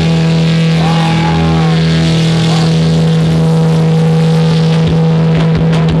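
Distorted electric guitar, a Telecaster-style, holding one loud sustained note through the amplifier, with a few short higher tones gliding up and down above it.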